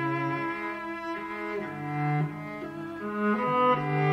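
A string section playing a slow passage of held, overlapping bowed notes, with the low cello line and the upper parts changing pitch every half second to a second.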